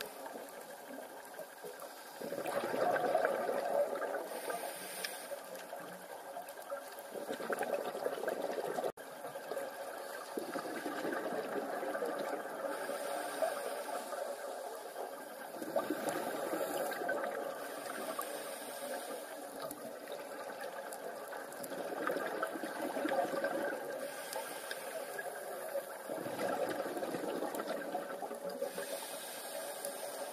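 A scuba diver's regulator breathing underwater, heard through the camera housing: bubbly surges of exhaled air lasting two to three seconds and coming about every five seconds, over a steady hiss.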